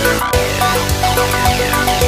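Electronic background music with a steady beat and repeating held synth notes.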